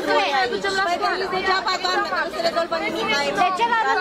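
Speech only: several women talking over one another in an agitated group argument.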